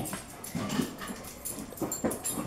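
A few faint, short breathy sniffs, spaced irregularly.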